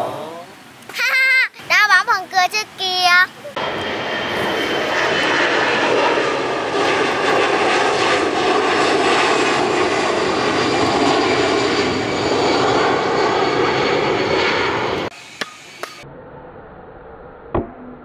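Propeller-plane engine sound effect, a steady drone that runs for about eleven seconds and then cuts off suddenly. Before it come a few seconds of wavering, warbling tones.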